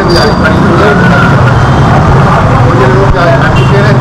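Busy street sound: motor traffic running steadily with people's voices mixed in.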